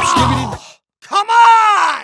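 A music track cuts off about half a second in, and after a short silence a single drawn-out vocal groan rises and then falls in pitch, as a meme sound effect.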